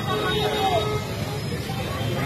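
Busy street traffic noise with a crowd of people shouting and talking over it.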